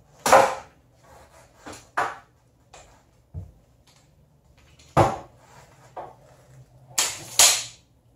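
Aluminium Manfrotto 190 tripod legs being worked by hand: leg lever locks snapping and metal leg sections clacking, a string of about eight sharp clicks and clacks, the loudest near the start and a pair near the end.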